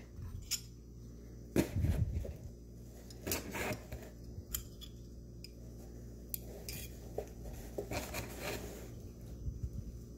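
Metal cutlery (a spoon, fork and knife) clinking and scraping in short, scattered clinks as it is slid into the pockets of a fabric roll bag, the loudest knocks about two seconds in.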